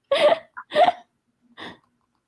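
A woman laughing in three short bursts, the last one fainter.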